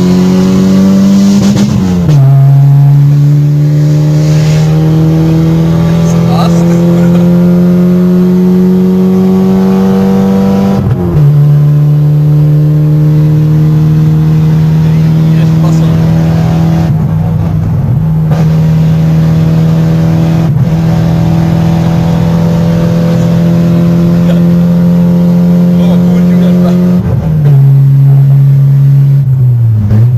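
Skoda Felicia 1.3 MPi four-cylinder engine, heard from inside the cabin while driving. It rises slowly in pitch under acceleration and drops sharply as gears change, about two seconds in and about eleven seconds in. It then holds a nearly steady pitch for a long stretch before dropping again near the end.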